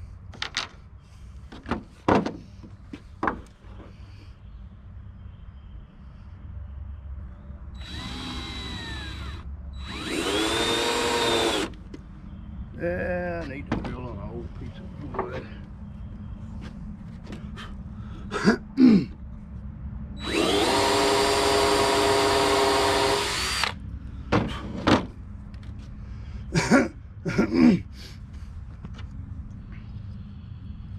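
Cordless drill running in several bursts, each spinning up and winding down: a short run about eight seconds in, a louder one just after ten seconds, a brief one near thirteen, and a longer steady run of about three seconds past twenty seconds, driving a screw into hard oak. Scattered sharp clicks and knocks fall between the runs.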